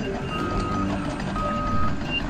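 A truck's reversing alarm beeping steadily, two half-second beeps about a second apart, over the low running of its engine.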